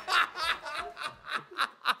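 A man laughing in short repeated bursts, about four a second, in response to a joke.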